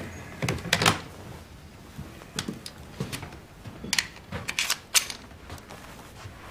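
Irregular footsteps with small clicks and knocks of objects being handled, a dozen or so spread over several seconds, over a faint low hum.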